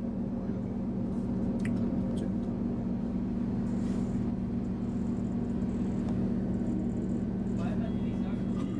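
Interior of a moving regional train: a steady drone and hum of the running gear and engine, with a few faint clicks.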